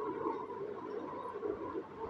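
Faint steady background hum with a thin held tone; no distinct event.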